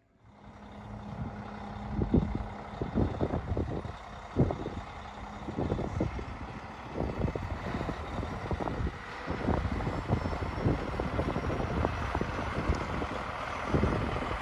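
Peterbilt 389 semi truck's diesel engine running as the rig drives slowly with a flatbed trailer. The sound comes in suddenly and builds over the first two seconds, with irregular low thumps throughout.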